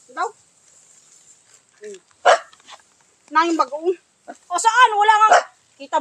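A dog barking a few times in short calls, the loudest and longest near the end, amid people's voices.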